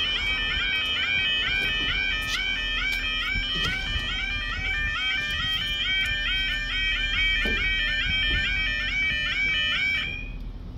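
Level crossing yodel alarm sounding while the barriers lower: a loud, rapidly repeating rising warble in several pitches. It stops suddenly at the end, as the barriers come fully down.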